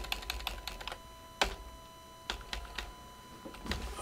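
Computer keyboard keystrokes: a quick run of key taps in the first second, then single taps spaced out, one of them louder about a second and a half in.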